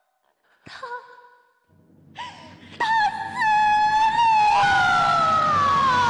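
Yue opera performer's long wailing cry of 'bu' ('no'), held high and sliding slowly downward, over low orchestral accompaniment, after a short cry about a second in.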